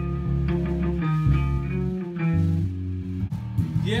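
Electric guitar and bass guitar playing held notes together, with the bass notes changing every half second to a second.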